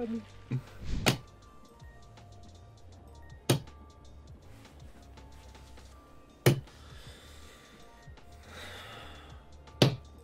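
Four sharp thuds spaced a few seconds apart, from a handball being thrown against a wall, over faint steady slot-game music.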